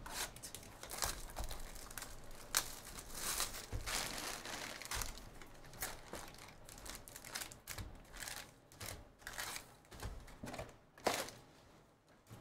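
A cardboard trading-card hobby box being torn open and its foil-wrapped packs pulled out and set down. It makes a long run of irregular crinkling, rustling and tearing, with a sharp rustle near the end.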